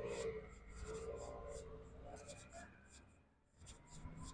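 Quiet street ambience with a faint, indistinct murmured voice in the first second or so and scratchy rubbing, like handling noise on the recording device. The sound drops out briefly near the end.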